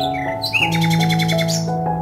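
Soft background music with sustained notes, over which a bird calls. Near the start there are a few short chirps, then from about half a second in a fast, even chattering trill of roughly a dozen notes a second, which stops shortly before the end.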